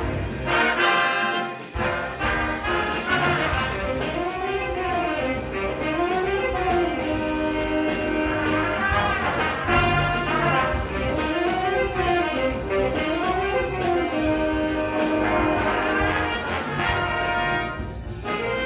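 Jazz big band playing live, with saxophones, trumpets and trombones over a rhythm section. The horns play phrases that rise and fall.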